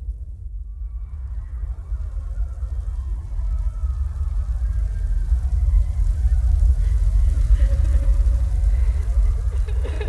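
Sound-art soundscape: a deep, low rumble that swells steadily louder, with faint wavering voice-like tones above it.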